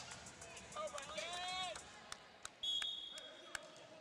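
Faint volleyball gym sound under the broadcast: distant voices, a few sharp knocks of a ball bounced on the court floor, then a short, high, steady whistle blast about two-thirds in, the referee signalling the next serve.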